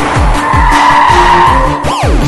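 Car tyres squealing briefly, over film score with a rapid deep bass pulse and a falling swoosh near the end.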